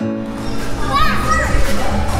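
Children shouting and squealing over the busy din of an indoor trampoline park, with music carrying on underneath.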